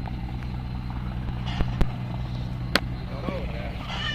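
Distant helicopter approaching, a steady low rotor and engine drone, with a few sharp clicks near the middle.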